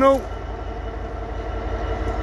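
DB Schenker Class 66 diesel locomotive's EMD two-stroke V12 engine idling while the locomotive stands at a signal: a steady low rumble with a faint steady hum above it.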